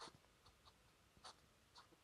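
Fountain pen nib scratching faintly on paper in a handful of short strokes as letters are written.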